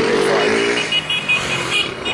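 Street traffic with a vehicle engine running close by, and a rapid high-pitched beeping in the second half.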